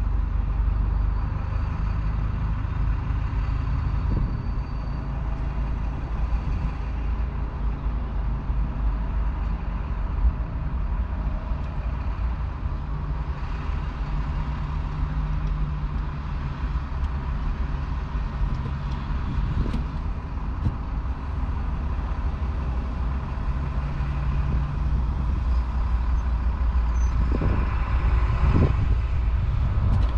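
Vehicle engine idling, heard from inside the parked cab as a steady low rumble, with a few short knocks near the end.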